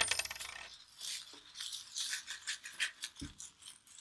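Small plastic pellets rustling and clicking inside a fabric beanbag as hands squeeze and rummage through it. A thin ring fades out in the first half second.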